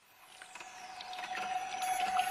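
A song's intro fading in from silence: a steady held tone with a high falling sweep and scattered soft plinks, growing louder throughout.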